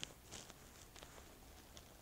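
Near silence: quiet room tone with a few faint, short ticks.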